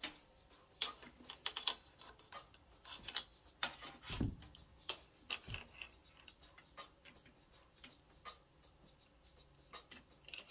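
Scattered light clicks and taps from hands handling equipment close to the microphone, with a dull thump about four seconds in.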